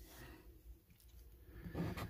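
Mostly quiet room tone, then near the end a coin starts scratching the rub-off coating of a paper scratch card.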